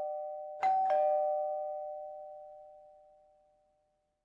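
A two-note 'ding-dong' doorbell chime, a high note then a lower one, struck about half a second in over the fading tail of the previous chime, then ringing out until it dies away about three seconds in.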